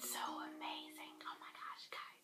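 A woman speaking softly, close to a whisper.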